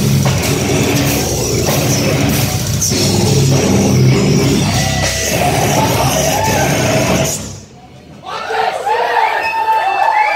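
Heavy metal band playing live, loud drums, bass and vocals, until the song stops abruptly about seven seconds in. After a brief lull, the crowd cheers and yells.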